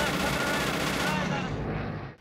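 Film soundtrack of propeller-driven P-51 Mustang fighters flying past, a steady loud engine drone with voices mixed faintly into it.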